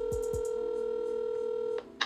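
Telephone ringback tone from the phone: one steady ring about two seconds long that cuts off near the end, the sign that the called number is ringing.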